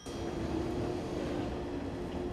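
JR West 223 series electric multiple unit running slowly into the platform: an even rumbling running noise with one steady hum held throughout.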